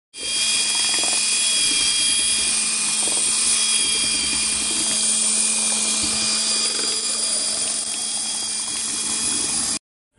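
Power drill with a paddle mixer running steadily at speed, stirring a thick slurry of floor-leveling cement in a plastic bucket, with a high motor whine. It stops abruptly near the end.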